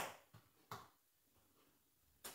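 Near silence: room tone, with one sharp click at the very start and two fainter ticks within the first second.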